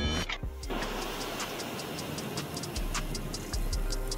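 Rapid, even clock-like ticking, several ticks a second, over background music with a steady low bass.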